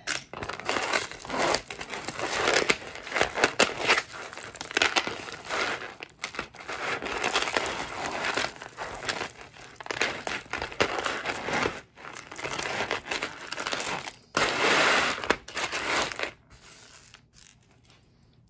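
A pile of costume jewelry (beaded necklaces, metal chains and bracelets) clinking and rustling as hands rummage through it in a tray, in an irregular run of small rattles. The handling dies down about sixteen seconds in.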